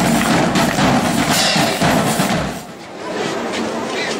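School marching band playing drums and cymbals with a steady beat of about two strokes a second, breaking off about two and a half seconds in.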